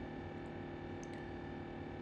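Quiet room tone with a steady electrical hum and one faint click about a second in.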